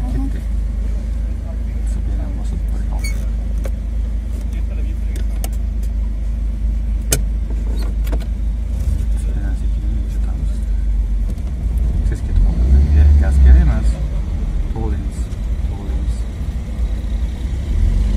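Daewoo car's engine and road noise heard from inside the cabin as it drives slowly: a steady low rumble that swells louder for about a second roughly two-thirds of the way through.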